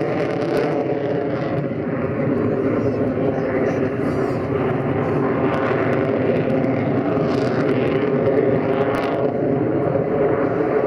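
Lockheed Martin F-22 Raptor in flight, its twin Pratt & Whitney F119 turbofan engines making a loud, steady jet noise that holds at an even level.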